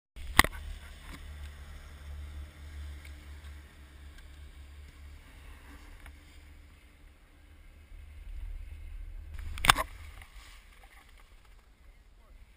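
Low rumble of skis running over groomed snow, with wind on a pole-mounted GoPro Hero 960's microphone, and two sharp knocks, one just after the start and one near the ten-second mark. The rumble eases off in the last two seconds as the skier comes to a stop.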